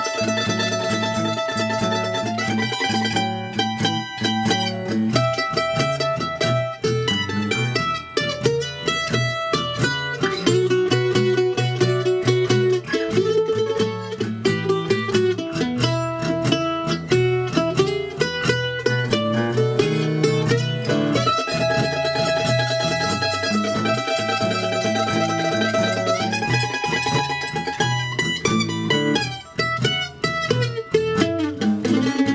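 Ellis F-style mandolin playing a 12-bar blues in E, picking quick single-note lines and chords through the E, A7 and B7 changes.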